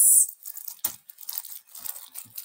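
Crinkling and rustling of packaging being handled, in short irregular bursts with small clicks.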